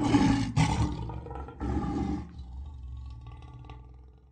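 A lion's roar as an intro sound effect: loud, in about three surges over the first two seconds, then dying away into a low rumble that fades out near the end.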